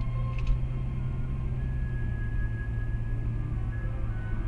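Steady low rumble of a car driving, under background music with long held notes. Two short clicks about half a second in.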